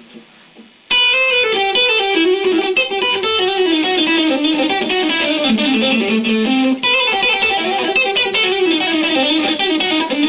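Stratocaster-style electric guitar playing a fast, continuous run of single notes with hybrid picking, pick and fingers alternating. It starts suddenly about a second in after a short pause, and the line steps down in pitch toward the middle, breaks briefly, and carries on.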